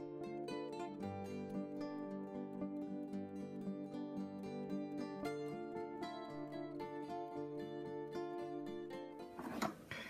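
Soft instrumental background music on a plucked string instrument, a sequence of picked notes with no voice.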